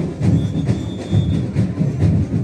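Samba percussion band playing together: deep bass drums beating a fast steady rhythm, about four beats a second, under snare drums and small hand drums. A thin high note is held for about a second near the middle.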